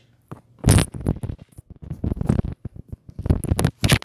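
Close handling noises: a quick, irregular run of scrapes, rustles and small clicks as a rope chain and pendant are worked by hand, with the loudest scrape about half a second in.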